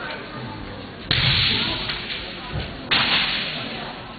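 Kendo bout: two loud, sudden bursts about two seconds apart, about a second in and near three seconds in, each fading over most of a second. These are the fencers' kiai shouts with their bamboo shinai striking.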